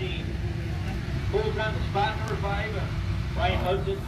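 Low, steady rumble of a field of dirt-track race cars circling slowly under caution, with indistinct voices over it.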